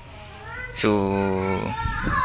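A domestic cat meowing faintly, overlapped by a man's drawn-out spoken 'so'.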